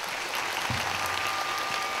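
Audience applause, steady clapping from a large crowd. A faint steady tone sounds over it from about a second in.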